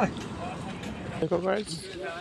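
Brief snatches of people's voices, one short voiced call about a second and a half in, over steady outdoor background noise.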